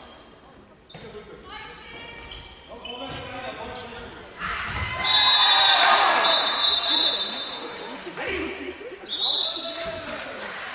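Handball game in a large, echoing sports hall: a ball bouncing on the court and players' voices calling. About four and a half seconds in comes a loud burst of shouting, with a high steady whistle held for a few seconds and heard again near the end.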